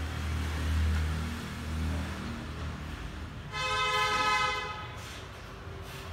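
A vehicle horn sounds once, a steady honk of just over a second, a little past halfway through. Before it there is a low rumble.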